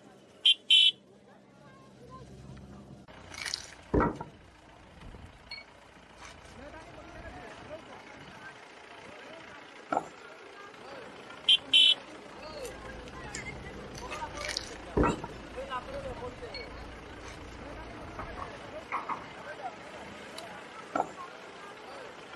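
Crowd chatter with a vehicle engine running, and a vehicle horn giving a short double honk, once near the start and again about halfway through. A few sharp knocks stand out in between.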